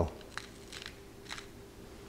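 Cole & Mason salt grinder being twisted on its coarsest setting: a quiet grinding of salt crystals, with three faint crackles. The mechanism runs smoothly and quietly.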